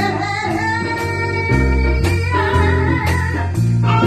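A jazz ballad played live: a vocalist sings long held notes over a walking line on a Kala U-Bass, a small-bodied bass with rubbery strings, backed by a small band.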